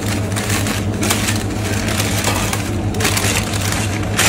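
Newspaper crinkling and rustling without a break as it is folded and scrunched around a food parcel, over a steady low hum.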